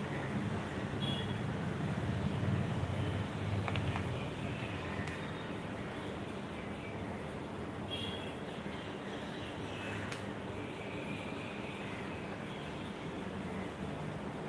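Steady low background rumble, a little stronger for the first few seconds, with a few faint high chirps and soft clicks.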